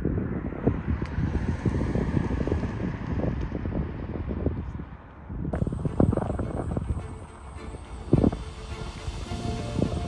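Wind buffeting the microphone: a rough low rumble with irregular gusts, changing abruptly about five and a half seconds in.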